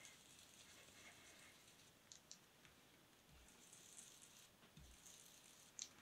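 Near silence, with faint soft rubbing of a Pan Pastel sponge applicator on paper and a few light clicks.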